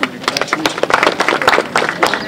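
An audience clapping for an award recipient: many hands clapping at an uneven pace.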